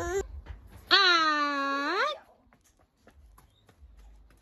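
A toddler's drawn-out wail: one long call of about a second, starting about a second in, that dips in pitch and rises again at the end.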